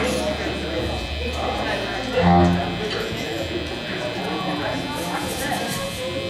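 Indistinct chatter from the room and the stage between songs over a steady amplifier hum, with one short low pitched note, the loudest sound, about two seconds in.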